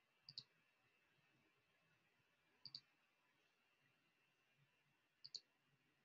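Three faint clicks over near silence, about two and a half seconds apart, each a quick pair of strokes.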